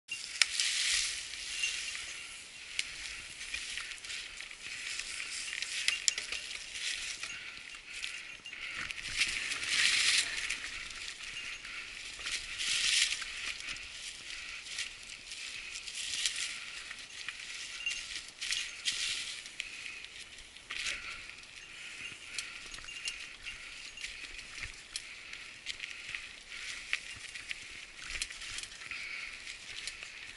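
Mountain bike tyres rolling through a thick layer of dry fallen leaves: a continuous crackling rustle that swells and fades every few seconds, with fine clicks from the bike.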